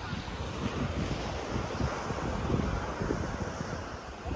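Small waves washing onto a sandy beach, with wind buffeting the microphone in uneven low rumbles.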